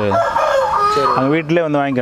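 A rooster crowing once, a raspy call about a second long that ends on a held note, followed by a man's voice.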